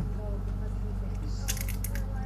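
Crisp saddle-shaped potato chip bitten right against a handheld microphone: a quick cluster of sharp crunches about one and a half seconds in, over a steady electrical hum. A single low thump at the very start.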